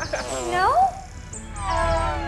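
Wordless playful cartoon vocal sounds over light background music: a voice swoops up and down in the first second, then a falling, laughing-like tone comes near the end.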